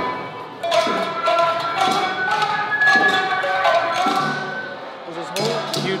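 A group of musicians playing a song on plucked string instruments, the notes starting sharply and ringing on.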